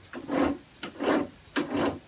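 Atlas lathe's drive being turned by hand with the feed engaged, so the lead screw turns: a dry, rasping rub that comes in strokes about twice a second.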